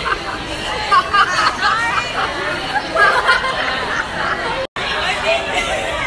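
Indistinct chatter of several young girls' voices over the hubbub of a crowded room. The sound cuts out for an instant after about four and a half seconds.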